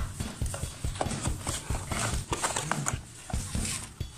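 Cardboard tablet box being handled: fingers tapping, sliding and opening the packaging, a quick irregular run of light knocks, clicks and scrapes.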